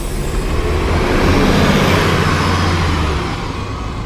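A 2015 Gillig Advantage transit bus drives past close by and away. Its engine and tyre noise swell to a peak about a second and a half in, then fade as it pulls off down the street.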